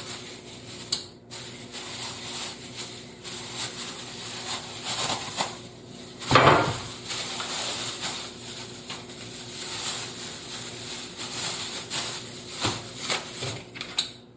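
Plastic produce bag rustling and crinkling as it is handled, in scattered short bursts with one louder burst about six and a half seconds in. A faint steady hum runs underneath.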